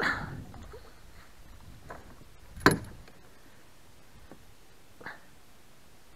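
Water splashing in a landing net at the start as a fish is handled beside a kayak, then a few knocks, the loudest a sharp one about halfway through.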